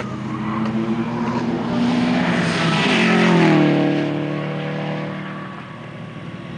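Subaru Impreza WRX STI's turbocharged flat-four engine passing at speed on a race track: the note climbs as the car accelerates toward the microphone, is loudest about three and a half seconds in, then drops in pitch as the car goes by and fades away.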